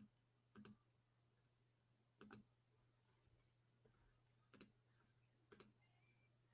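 Near silence: a faint steady low hum with four faint, short clicks spread across the few seconds.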